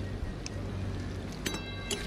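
Steady low rumble and hiss around a karahi simmering over a wood fire, then two quick metal clinks near the end as a spatula strikes the pan, the first ringing briefly.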